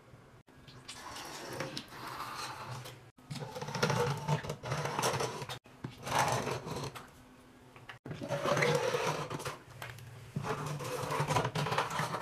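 The plastic nozzle of a Lysol Cling & Fresh toilet bowl cleaner bottle scraping along shower tile grout as gel is squeezed out. It comes as several scratchy strokes of one to three seconds each, over a low steady hum.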